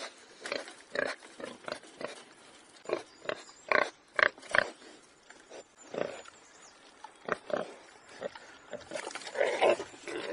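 Warthog grunting: a series of short, separate grunts at irregular spacing, loudest about four seconds in, giving way to a longer, denser run of calls near the end.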